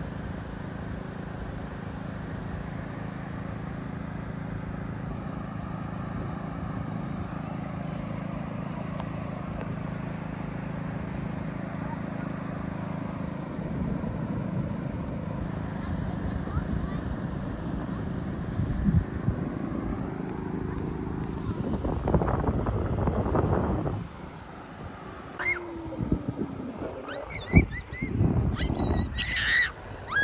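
Outdoor seaside ambience: a steady low rumble with faint distant voices of children playing in the water. It grows louder and busier about two-thirds in, then changes abruptly near the end to shorter voices and sharp high sounds.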